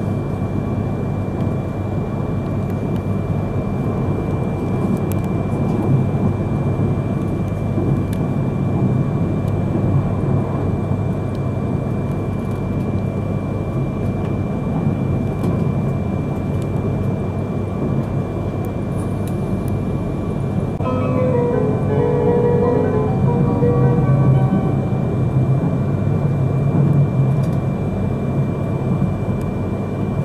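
Cabin running noise of a Yamagata Shinkansen Tsubasa train in motion, a steady low rumble with a faint high whine. About two-thirds of the way in, a short chime melody of stepped notes plays, the onboard chime that comes before the station announcement.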